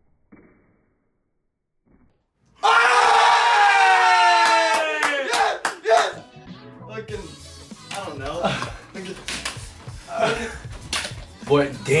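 A few faint taps, then about two and a half seconds in a sudden loud drawn-out voice that falls in pitch, followed by music with excited yelling over it.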